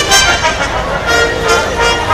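Live orchestral fanfare, with the brass section playing loud held chords.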